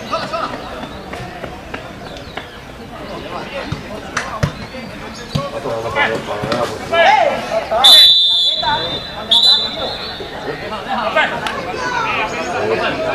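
Referee's whistle blown twice, a short shrill blast about eight seconds in and a longer one a second later, stopping play for a foul, over spectators' chatter.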